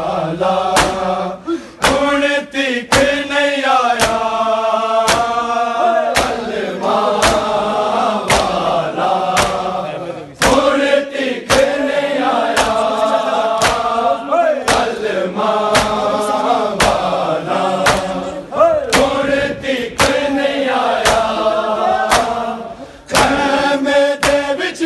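A group of men chanting a Muharram mourning lament in phrases, with sharp slaps of hands striking bare chests in matam about once a second.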